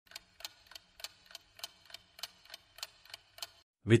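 Clock-ticking countdown sound effect: a steady run of evenly spaced ticks timing the answer countdown, stopping shortly before the end.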